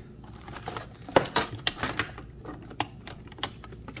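Trading cards being pulled out of their pack by hand: irregular clicks and crinkles of card stock and wrapper, the sharpest about a second in.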